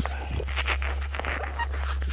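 A nine-week-old Malamute–Siberian husky mix puppy breathing hard right at the microphone, a quick run of short breaths several a second, over a steady low rumble.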